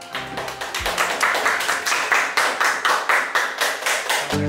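A few people clapping their hands in quick, uneven claps.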